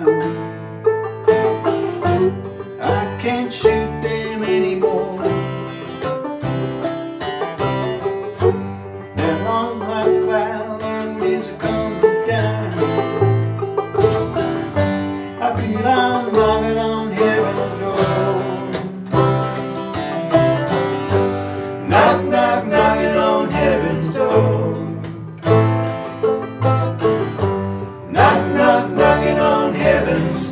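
An acoustic string trio of banjo, acoustic guitar and upright bass playing together in a bluegrass style, the banjo picking over strummed guitar and a plucked bass line.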